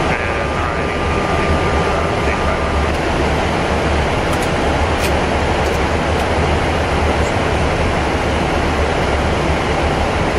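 Steady in-flight cockpit noise of a Boeing 777-300ER: rushing airflow over the flight deck with a deep rumble underneath. A thin steady tone sounds over it for the first few seconds and stops about three seconds in.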